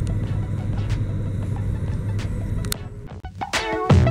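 Car cabin noise: a steady low hum of engine and road while the car moves slowly in traffic. About three seconds in it dips, and background music with a beat begins.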